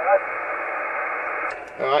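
Steady receiver hiss from a Yaesu FT-847 transceiver's speaker on 2.4 GHz, heard through a transverter just after the distant station's voice ends. The hiss is narrow-band, with no highs above the voice range, and cuts off about one and a half seconds in.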